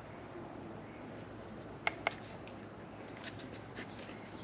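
Quiet steady background ambience with two short, sharp clicks close together about two seconds in, and a few fainter ticks later.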